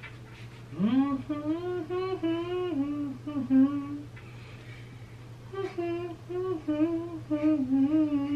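A man humming the melody of a Christmas song, in two phrases with a pause of about a second and a half between them.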